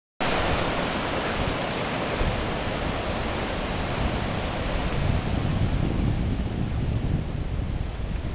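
Ocean surf washing up and back over a sandy beach, a steady hiss of foaming water, with a low rumble of wind on the microphone underneath. The hiss softens somewhat in the second half as the wash thins out.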